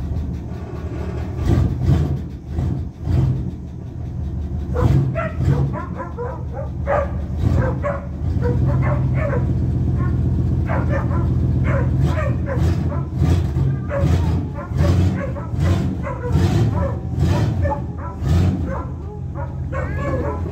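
A dog barking repeatedly, in short sharp yips, over a Ford pickup's engine idling steadily.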